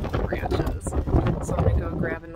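Wind buffeting the microphone in a low, uneven rumble, under a woman's speaking voice.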